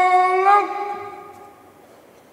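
A soldier's long, drawn-out shouted drill command, held on one steady note that drops slightly about half a second in and trails away.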